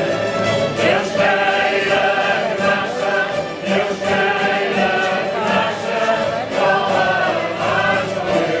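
Several cavaquinhos strummed together in a steady rhythm, accompanying a group of men and women singing together.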